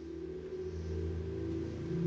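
Low, sustained electronic tones, a steady drone of several held pitches, swelling gradually in loudness like an ambient music pad.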